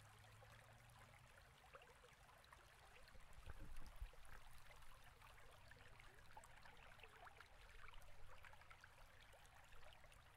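Near silence with faint crackling handling noise from fingers pulling and tapering synthetic fly-tying fibers at the vise, a little louder about four seconds in.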